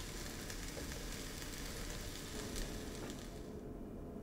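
Faint, steady hiss of background noise with no distinct events; its upper, brighter part falls away near the end.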